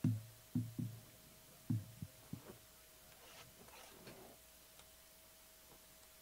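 About seven dull low thumps in the first two and a half seconds, then a little faint handling noise, over a steady electrical hum.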